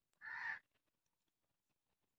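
A single short, harsh bird call about a quarter second in, then near silence.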